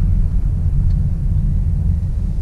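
Low, steady rumble of road and tyre noise inside the cabin of a Honda Clarity rolling in EV mode, running on its electric motor with no engine sound.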